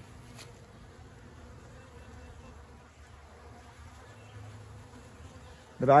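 Honeybees flying at the entrance of a working hive, a faint, steady hum of foraging traffic.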